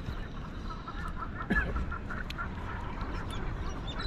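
Birds calling in the background: a run of short chirping calls, and one call that falls in pitch about a second and a half in, over a steady low rumble.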